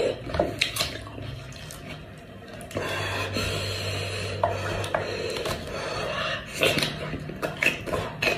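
Close-miked eating sounds: a cooked sheep head being pulled apart by hand, with meat and gristle tearing wetly, sticky oily fingers, chewing and lip smacks, and many scattered sharp clicks. A low steady hum sits underneath and grows stronger from about three seconds in.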